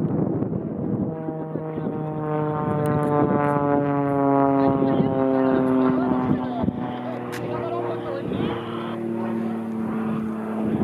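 Extra 300L aerobatic plane's six-cylinder Lycoming engine and propeller droning overhead. Its pitch falls slowly over several seconds and then settles to a steadier note near the end.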